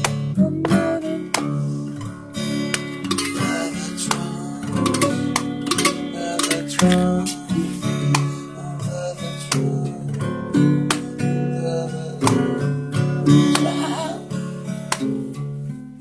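Acoustic guitar strummed in an instrumental passage of a psychedelic garage rock song played live, with many sharp, rhythmic strokes.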